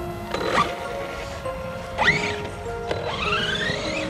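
Background music over the whine of a Redcat Kaiju RC monster truck's brushless electric motor, rising in pitch as it accelerates: a short rise about two seconds in and a longer one near the end.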